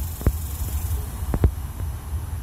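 Low, steady rumble of an idling vehicle engine, with a few faint clicks, one about a quarter second in and two close together past the middle.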